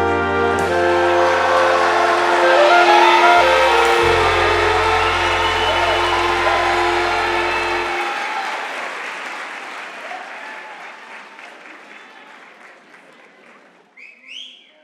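Audience applause swelling over the final held chords of a children's song on a backing track; the bass and the music stop about eight seconds in, and the applause then dies away gradually.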